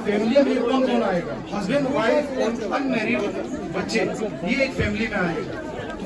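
A man speaking Hindi through a handheld microphone, with other voices chattering in the background.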